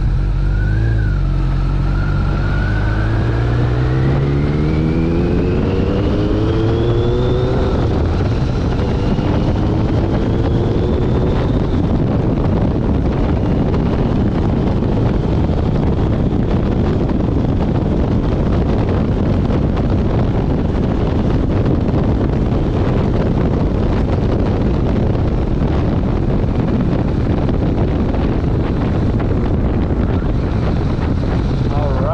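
2001 Kawasaki ZRX1200R's carbureted inline-four engine accelerating, its pitch rising, dropping at a gear change about eight seconds in, then rising again. From about twelve seconds on, a steady rush of wind and road noise at speed covers the engine.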